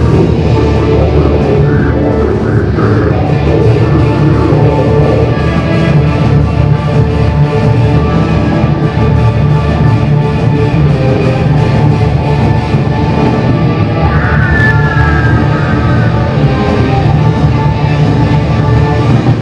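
Metal band playing live: dense, continuous distorted guitars, bass and drums at a loud, steady level. About fourteen seconds in, a high note slides downward over the wall of sound.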